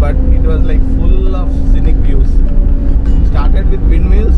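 Steady low engine and road rumble inside the cabin of a Maruti Eeco van on the move, with voices talking over it.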